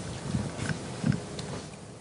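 Microphone handling noise: a few soft low thumps and rustles, with faint breathing close to the mic, over a steady room hum.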